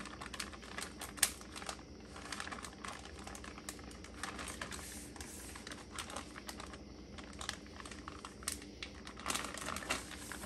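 A clear zip-top plastic bag being pressed and smoothed down into a plastic bucket by hand, crinkling and crackling in a quick, irregular run of small clicks.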